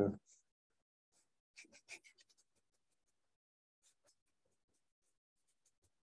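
Faint scratchy strokes of a stiff bristle filbert brush laying oil paint onto the painting surface, a short cluster of strokes about one to two seconds in and a few fainter ticks later.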